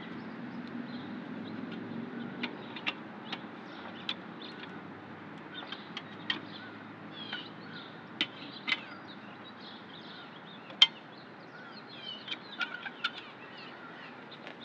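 Irregular sharp metallic clicks and clinks of a lug wrench working the lug nuts of a spare wheel as they are snugged down. The loudest click comes about eleven seconds in. Faint high chirps can be heard in the background.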